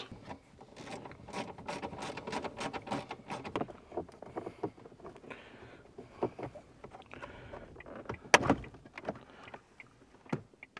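Small clicks, scrapes and rattles of plastic dashboard trim on a 2010 Ford Fiesta being worked loose by hand and with a plastic trim tool. A louder snap a little past eight seconds in is a clip letting go.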